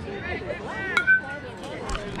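A bat hitting a pitched baseball about a second in: one sharp crack with a short ring after it, over talk from players and spectators.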